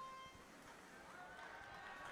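Near silence: faint venue room tone with a faint steady tone or two.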